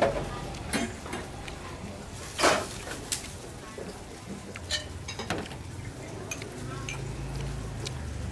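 Scattered clinks and knocks of ceramic bowls and plates on a table, with one short scrape or rustle about two and a half seconds in.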